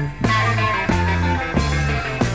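1970s British progressive rock band playing a full-band passage: low held bass notes under guitar, with drum hits on a steady beat. There is a brief break about a quarter second in.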